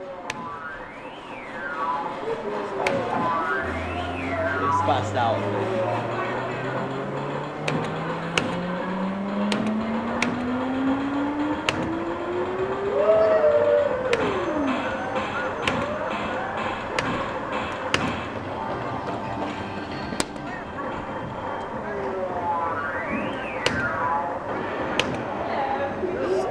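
Arcade game electronic sound effects, most likely from a Stacker prize machine: a long tone rising slowly in pitch over about ten seconds, bursts of up-and-down warbling chirps near the start and again near the end, and many sharp clicks, over arcade background noise.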